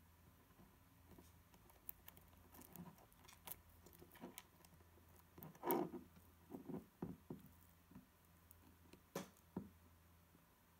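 Faint scattered clicks and taps of an Allen key and small metal extruder parts being handled on a stepper motor while the feed wheel is lined up, with a louder knock a little past halfway and another near the end, over a faint low hum.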